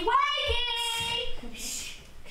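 A child's voice singing a long held note that rises at the start, holds steady and fades out about a second and a half in.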